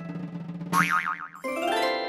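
Cartoon-style children's music jingle with a boing sound effect: a wobbling, warbling tone partway through, then a rising sliding note near the end.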